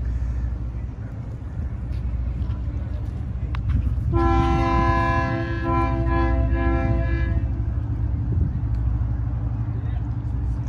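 A horn sounds one long, steady, multi-note blast lasting about three seconds, starting about four seconds in, over a constant low rumble.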